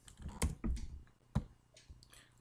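A few separate sharp clicks from a computer mouse and keyboard.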